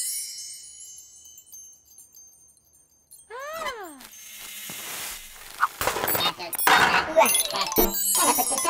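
Cartoon sound effects and voices: a twinkling chime fades out, and after a short lull comes a squeaky rising-and-falling cartoon voice. Then a hiss of freezing air builds into a loud, busy stretch of robot chatter with crackling and tinkling ice.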